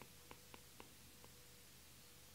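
Near silence, with a few faint light taps of a stylus on a tablet's glass screen in the first second and a half.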